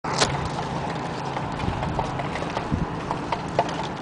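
Breeze blowing along a city street, with scattered light ticks and rustles of litter shuffling in the wind over a steady low hum.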